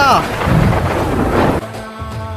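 Thunder sound effect: a loud rumbling crash lasting about a second and a half that cuts off sharply.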